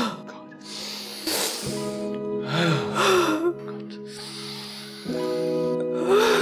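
Background music with held chords, over deep, forceful breathing: loud gusts of breath, one about a second and a half in and another, with a short voiced sigh, around three seconds in.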